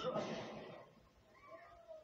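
A cartoon character's weary sigh, followed about a second and a half in by a faint, thin whimpering moan: the voice of someone worn out and too weak to go on.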